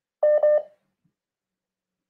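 Two short phone-line beeps in quick succession at one steady pitch, about half a second in all.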